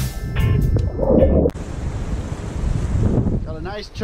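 Background music with a beat that cuts off abruptly about a second and a half in. After the cut comes a steady rush of wind on the microphone over ocean surf, with a man beginning to talk near the end.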